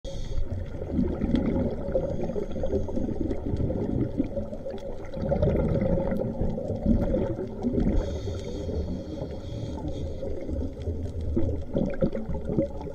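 Underwater sound picked up by an action camera in a waterproof housing: a muffled, low, fluttering rumble of water against the housing, with scattered faint clicks and crackles.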